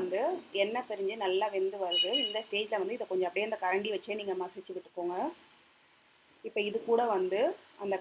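Speech: a woman talking, with a pause of about a second in the middle.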